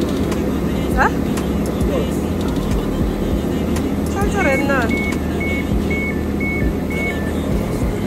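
A train standing at a platform, its engine and equipment running with a steady rumble and hum, while the door warning sounds a run of evenly spaced beeps, about two a second, as the passenger doors open.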